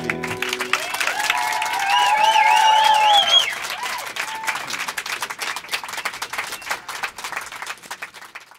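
The last acoustic guitar chord rings out and stops, then an audience applauds, with cheering voices for a few seconds. The clapping thins out toward the end.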